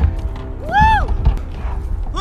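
Background music with a man's short shout of effort, rising then falling in pitch, about a second in, over a low rumble and a few low knocks.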